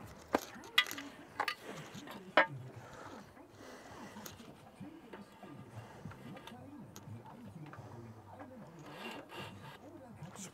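A few sharp knocks in the first seconds as a long straightedge is handled and set against concrete step blocks, then faint rubbing and scraping as it is held along them.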